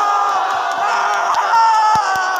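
Crowd of basketball spectators cheering and yelling together as their team wins, with one voice holding a long shout near the end.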